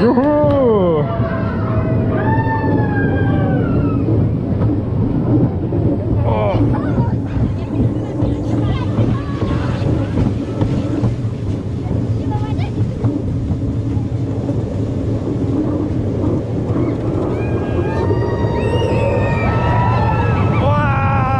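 The Rasender Tausendfüßler family roller coaster train rolling along its track, with a steady running rumble and hum. Riders' voices call out in sliding tones at the start and again near the end.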